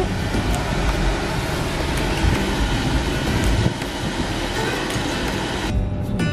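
Steady traffic and road noise with music playing under it; near the end the noise cuts off suddenly and the music carries on.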